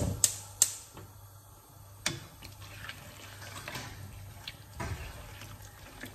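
Silicone spatula stirring and scraping egg-coated pasta in a metal frying pan, a soft wet squishing, with a few sharp knocks in the first two seconds. A low steady hum runs underneath.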